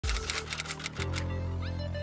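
A typewriter-style sound effect, a quick run of key clicks, over electronic music that drops into a deep, sustained bass about a second in.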